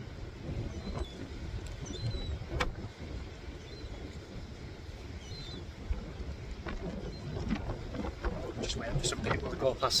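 Gusty wind rumbling on a phone's microphone, a steady low buffeting.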